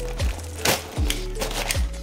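Background music with a repeating low beat, over which a plastic postal mailer bag is slit and torn open with a knife, a short sharp rip about a third of the way in.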